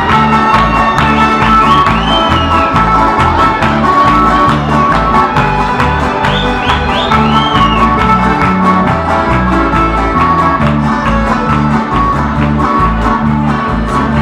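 Canarian parranda folk ensemble playing live: an instrumental passage with accordion, strummed guitars and laúd or timple, and electric bass keeping a steady rhythm.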